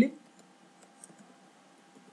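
Typing on a computer keyboard: faint, scattered key clicks.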